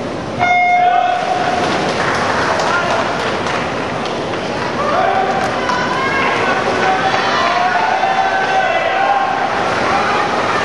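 Electronic starting signal for a swimming race: one beep about half a second in, lasting about a second. It is followed by a crowd of teammates and spectators shouting and cheering on the swimmers.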